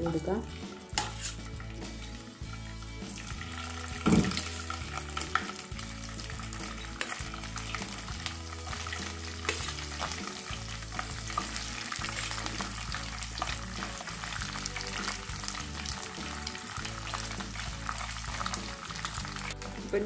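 Chicken pieces frying in hot oil in a nonstick wok: a steady sizzle and crackle as more pieces are added, with one sharper, louder spatter about four seconds in.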